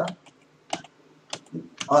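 Three separate key presses on a computer keyboard, short sharp clicks spaced about half a second apart, paging through presentation slides.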